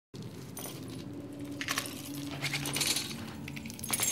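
Hanging metal chains jangling and clinking in several short bursts over a low, steady hum.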